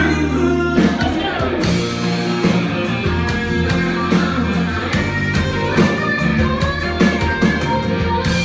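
Live band playing an instrumental rock intro: electric guitar with sustained bass notes, and an electronic drum kit keeping a steady beat that comes in about a second and a half in.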